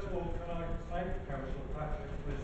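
Indistinct speech from a person talking in a large, reverberant chamber, over an uneven low rumble.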